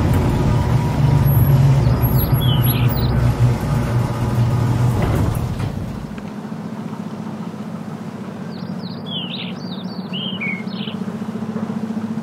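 Maruti Suzuki Swift hatchback driving in and pulling up, its engine rumble ending about six seconds in. Birds chirp in short falling calls twice, around two to three seconds in and again near the end.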